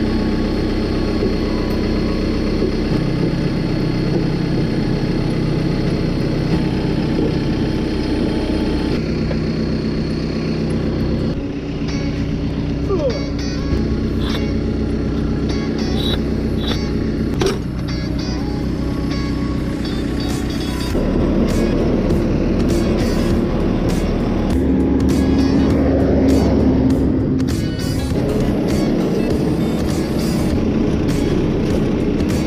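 Horizontal directional drill rig's diesel engine running steadily, its note changing level several times as the rig works the drill rods.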